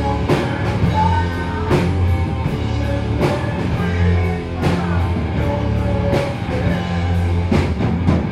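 A rock band playing live: electric guitar, bass guitar and a drum kit, with a singer. Heavy drum and cymbal accents fall about every second and a half over a steady, loud bass line.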